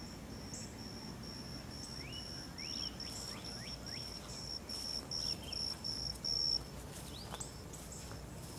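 An insect chirping in a steady high-pitched pulse, about three chirps a second, stopping about six and a half seconds in. A few short sweeping chirps sound over it.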